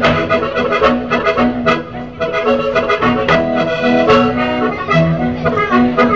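Traditional Sardinian folk dance music accompanying a ring dance, with a steady pulse accented about every second and a held low note under the melody.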